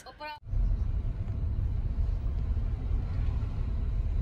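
Steady low rumble of a car driving, engine and road noise heard from inside the cabin; it starts abruptly about half a second in.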